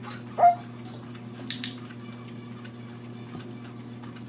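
A dog gives one short rising whine about half a second in, and a stainless steel bowl clinks as the dog noses at it, with one sharp clink about a second and a half in, over a steady low hum.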